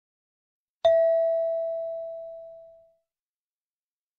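A single bell-like chime struck once about a second in, one clear tone ringing down over about two seconds, marking the start of the next question in a listening-test recording.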